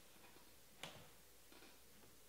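Near silence, broken by one short faint click a little under a second in and a softer one later: trading cards being handled and set down on the table.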